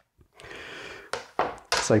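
Chopped ingredients sliding off a plastic chopping board into a mixing bowl: a short scraping rustle, then a single tap about a second in.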